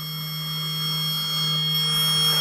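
A small brushless (BLDC) model-aircraft motor runs steadily on its repaired three-phase controller, drawing about 1.2 A at 12 V. It gives a steady low hum with thin high whines above it, and grows slowly louder.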